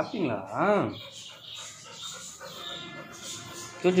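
Black Labrador puppy whimpering softly.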